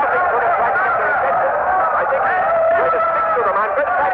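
Several men's voices shouting and calling together without clear words: a radio-drama crowd of soldiers, some voices holding long calls. The recording is a narrow-band vintage radio broadcast.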